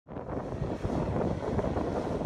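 Wind buffeting the microphone outdoors: a rough, fluctuating noise, heaviest in the low end, with no clear tone.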